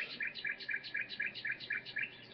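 A bird chirping in a quick, even series of short chirps, about four a second.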